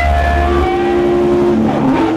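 Live rock band playing loud, with distorted electric guitars holding long notes over drums and cymbals; a deep bass note drops out about a third of the way in.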